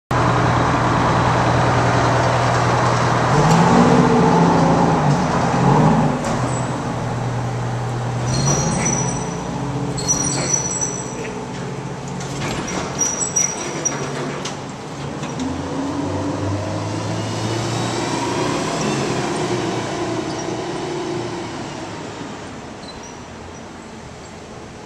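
Diesel engine of a tractor-drawn aerial ladder truck, heard from the rear tiller cab, running and revving as the truck pulls away, its pitch rising and falling several times as it accelerates and shifts. A few short high squeaks come in the middle, and the engine sound fades toward the end.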